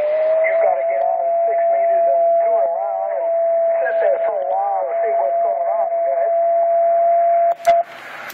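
Single-sideband voice from an Icom HF transceiver's speaker with a steady whistle over it: the carrier of another station tuning up on the same frequency. The whistle rises a little in pitch about half a second in and cuts off just before the end.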